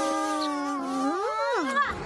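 A cartoon character's long, muffled hum held on one steady pitch through a kiss. Near the end it swoops up and back down before breaking off.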